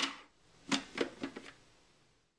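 A handful of short, light clicks and knocks of hard plastic about a second in: the food processor's lid being twisted off its bowl.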